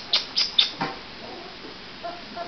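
A puppy giving four short, high-pitched squeaking yips in quick succession within the first second.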